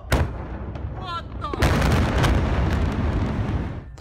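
A huge explosion recorded on a phone: a sharp bang just after the start, then from about a second and a half in a loud, long, rumbling blast that slowly dies away near the end.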